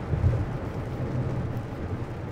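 Steady low rumble of tyre and road noise heard inside a car driving at freeway speed on a rain-soaked road, with rain and spray on the bodywork. The rumble swells briefly about a quarter second in.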